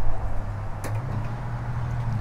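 A steady low hum, with a sharp click at the start and another about a second in.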